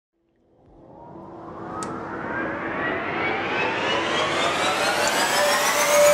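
A produced riser sound effect: a whooshing swell that climbs out of silence and grows steadily louder, with several tones gliding upward in pitch together. A single faint tick comes just under two seconds in.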